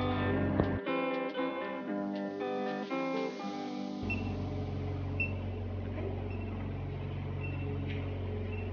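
Background music of plucked acoustic guitar, a run of picked notes over the first four seconds or so. After that only a steady low hum remains.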